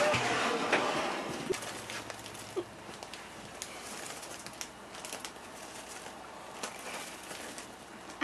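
A silicone spatula scraping through melted chocolate in a glass pie pan, fading out in the first second or so. Then a plastic bag of mini marshmallows rustles as they are poured into the pan, with scattered light ticks.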